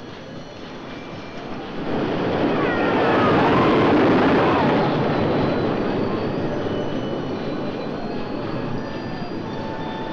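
A roller coaster train running along its wooden track. It swells about two seconds in, is loudest a second or two later, then eases off but keeps going.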